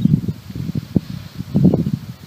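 Wind buffeting the microphone in irregular gusts, a low rumbling rustle that swells loudest near the start and again about a second and a half in.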